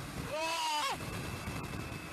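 A person's voice giving a short shout that rises and then falls in pitch about half a second in, over steady background noise.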